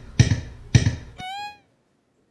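Three sharp, dramatic musical hits about half a second apart, like a sting added in editing. They are followed by a brief pitched tone that bends up and then down, and then cut to dead silence about halfway through.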